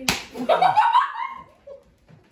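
A single sharp smack of a flour tortilla slapped across a man's face, followed by a loud, rising vocal cry.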